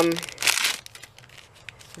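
Clear plastic packaging crinkling as the packet holding a lace butterfly trim is handled, with a short burst of crinkle about half a second in, then faint crackles.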